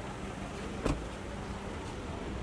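A car's rear door pushed shut by hand, one sharp thud a little under a second in, over a steady low vehicle rumble.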